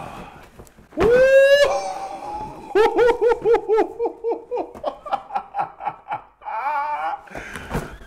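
Men laughing excitedly. About a second in there is a loud held whoop that rises in pitch, then rhythmic hearty laughter follows.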